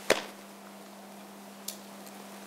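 A single sharp knock a moment in, then a fainter tick near the end, over a steady low electrical hum.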